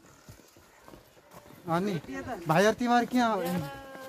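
Faint footsteps on a stone trail, then a loud voice from about a second and a half in, with held, pitch-bending sounds.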